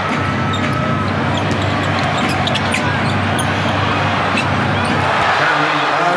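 A basketball being dribbled on a hardwood court, with steady arena noise and music running underneath.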